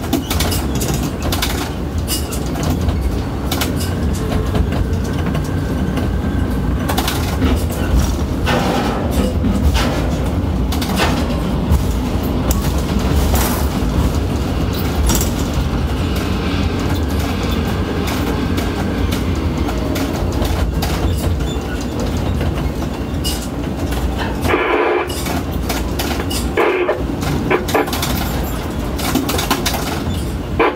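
Ship-to-shore container crane at work, heard from the operator's cab: a steady low rumble from the hoist and trolley drives, with frequent clicks and knocks, as a container is lifted out of the ship's hold and carried over the wharf. There are a few sharper knocks near the end.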